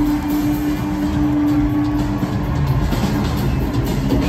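Rock band playing live through an arena PA, recorded from the crowd with a heavy low rumble: an electric guitar holds one long note for about two seconds over the drums and bass.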